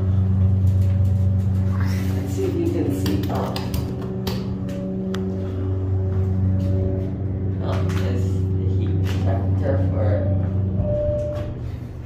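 Schindler hydraulic elevator running as the car travels: a steady hum with several overtones, with small clicks and rattles, fading out near the end as the car stops.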